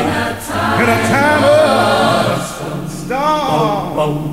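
Unaccompanied choir singing in harmony, several voices moving together over a low held bass part.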